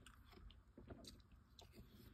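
Faint, irregular crunching of fluffy freezer frost being chewed, a scatter of soft crackles.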